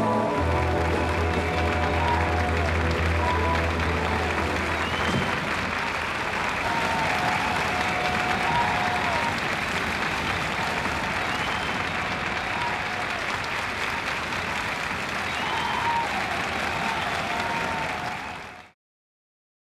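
An audience applauding steadily at the end of a live rock band's song. For the first five seconds or so the band's last low chord rings on under the clapping, then cuts off.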